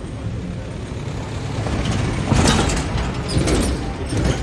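A truck towing an enclosed cargo trailer passes close by, its engine rumble building, with a burst of rattling and clatter from about two and a half seconds in.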